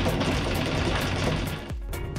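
Anchor windlass hauling in the anchor chain, a rapid rattling clatter with background music over it; the rattle cuts off suddenly near the end.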